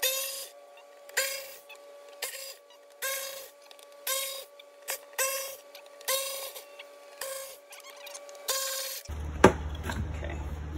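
A power screwdriver with a Phillips bit backing out the tail lamp cover's screws: short whirs about one a second, around ten in all, over a faint steady tone.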